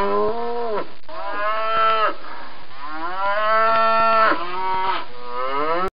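Domestic cow mooing, several moos one after another with one long one in the middle; the sound cuts off abruptly near the end.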